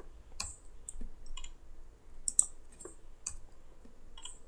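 Faint, irregular clicks of computer keys being pressed, about half a dozen separate clicks spaced unevenly.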